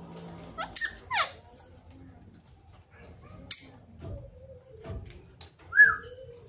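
Caged parakeets giving short, shrill calls: a quick run of sweeping chirps about a second in, a sharp high call a little past the middle, and a lower, louder squawk near the end.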